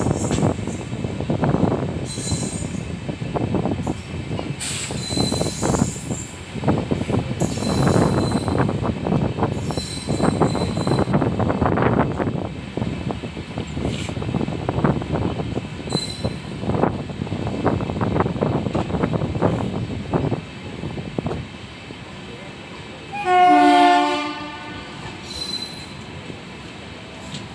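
LHB passenger coach wheels running over the track with a rumbling, rhythmic clatter and short high flange squeals on the curve, dropping quieter after about 21 seconds. About 23 seconds in, the WAP-7 electric locomotive at the head of the train sounds its horn once, for about a second and a half.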